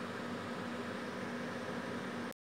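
Steady hum and hiss of a running appliance, with a constant low tone and no distinct events.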